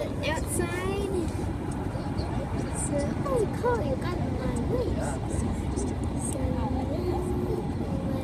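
Steady road and engine noise inside a moving car at highway speed, with indistinct voices talking in the background.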